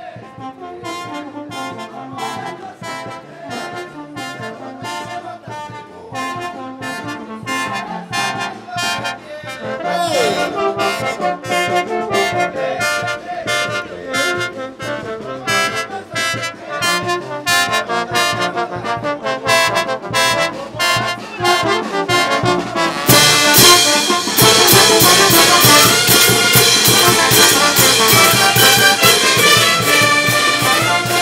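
Brass band playing, with trumpets and trombones over a steady beat. The band gets louder and fuller about three quarters of the way through.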